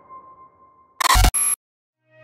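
The tail of the intro music fades out, then about a second in a camera shutter sound effect: two quick, loud clicks in close succession, the first with a low thump.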